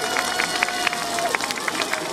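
Scattered, irregular clapping from an audience after a dance performance. A drawn-out call from a voice is held for about the first second and a half.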